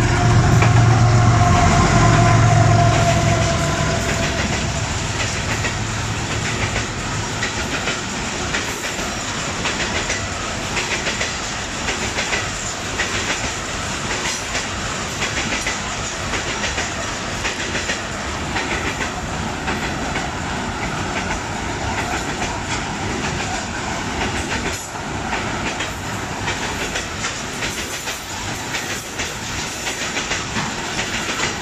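A GEU-40 diesel-electric locomotive passes close by in the first few seconds with a loud engine hum and a slightly falling whine. Then a long string of coal hopper wagons rolls past without stopping, with a steady rumble and a regular clickety-clack of wheels over the rail joints.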